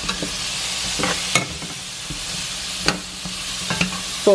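Diced sweet potatoes sizzling in avocado oil in a metal pot as they are stirred, with a few sharp clinks of metal tongs against the pot.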